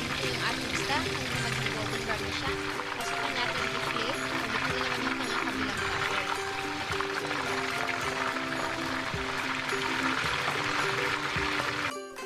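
Background music with held notes over the steady sizzle of a whole parrot fish deep-frying in hot oil in a wok.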